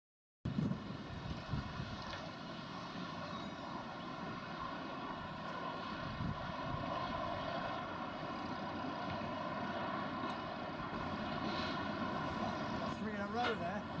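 Class 59 diesel locomotive's two-stroke EMD engine droning steadily as it approaches with a freight train, growing slowly louder. A short spoken word comes at the end.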